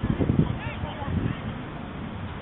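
A short, loud, honk-like shout from the football pitch in the first half second, with a smaller one a little after a second.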